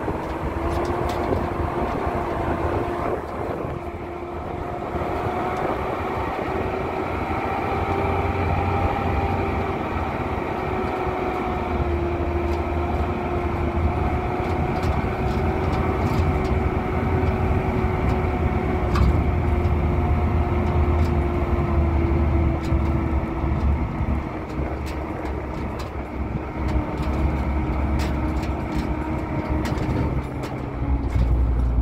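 A vehicle driving slowly along a rocky dirt track: steady engine drone and low rumble with a held whine that drifts a little in pitch, dropping slightly near the end. Scattered sharp clicks and knocks run through it.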